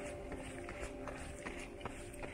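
Running footsteps on an asphalt road, a steady rhythm of soft footfalls about two to three a second, with faint music underneath.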